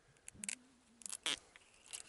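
A few short scrapes and rustles of fishing gear being handled in a boat, with a brief faint low hum about halfway through.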